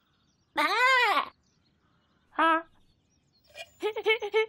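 A cartoon lamb's bleat-like voiced calls: one long call that rises and falls in pitch about half a second in, then a short call about two and a half seconds in.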